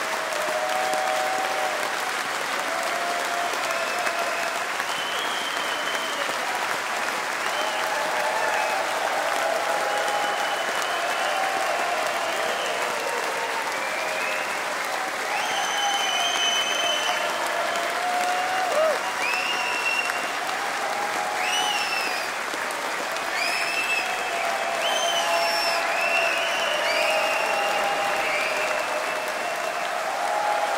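Concert audience applauding steadily after the show, with cheering voices and short high whistles rising out of the clapping.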